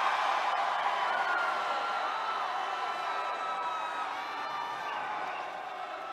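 A large crowd cheering: a dense mass of many voices with single shouts rising out of it, slowly fading toward the end.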